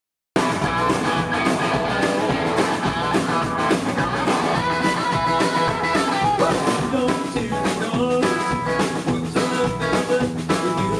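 Live rock band playing: drum kit, electric and acoustic guitars and bass. The sound cuts in abruptly about half a second in.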